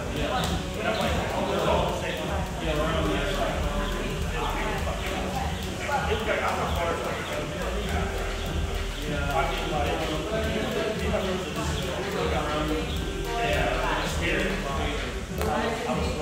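Jump rope turning and slapping the rubber gym floor again and again, with the feet landing on each jump, over background voices.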